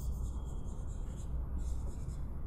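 Marker pen writing on a whiteboard, a faint scratchy rubbing as the letters are drawn, over a steady low hum.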